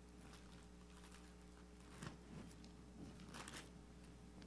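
Near-silent room with faint rustling of Bible pages being turned: a soft rustle about two seconds in and a longer one about three and a half seconds in, over a faint low hum.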